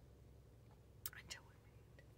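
Near silence over a steady low hum, broken about a second in by a brief soft whisper with a couple of mouth clicks, lasting about half a second.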